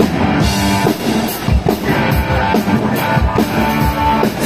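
Live band playing loud rock-style music with a drum kit and electric guitar, amplified through the PA, with a steady beat of drum hits.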